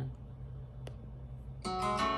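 Low steady hum with a single sharp click about midway. Near the end the opening guitar chord of the song comes in suddenly and rings on.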